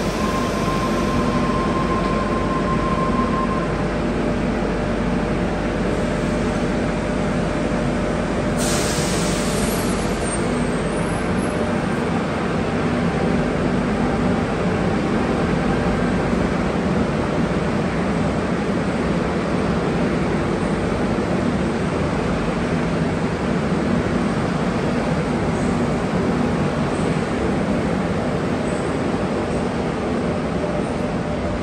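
Tangara double-deck electric train pulling out of an underground station platform: a steady, loud rumble of motors and wheels, echoing off the station walls. A steady tone sounds for the first few seconds, and a sharp burst of hiss comes about nine seconds in as the train gets under way.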